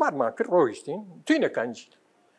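Only speech: an elderly man talking in several short phrases.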